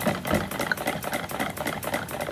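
A stick blender working through thick soap batter in a plastic pitcher, stirred and pulsed to bring the oils and milk-lye solution to emulsion. Its head clatters against the pitcher in quick, irregular knocks.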